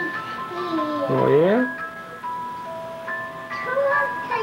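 A simple chiming melody of held, evenly pitched notes, changing about once a second. A voice slides in pitch over it about a second in.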